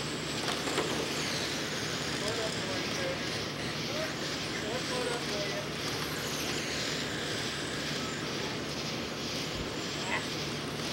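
Electric RC late-model race cars with 17.5-turn brushless motors running laps on a clay oval. Their high motor whines rise and fall as they pass, over a steady hiss.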